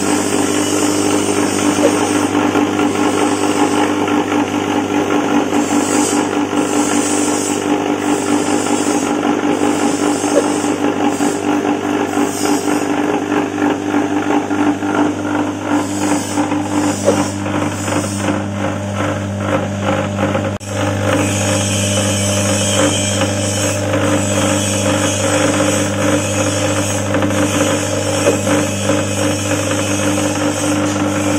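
Small belt-driven suji-leaf grinding and chopping machine running on its electric motor, a steady hum under a dense, fast churning rattle as leaves and water are fed through and ground to pulp.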